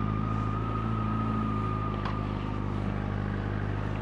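Honda CBR sport bike's engine running at steady, even revs, heard from the rider's helmet microphone, with a thin high whine over the first half.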